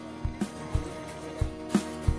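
Music with a steady beat: a low drum thump about twice a second under held instrumental tones.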